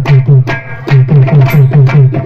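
Magudam drums beaten in a fast, even rhythm, about five strokes a second; each stroke is a deep thud that drops in pitch, with a brief break about half a second in.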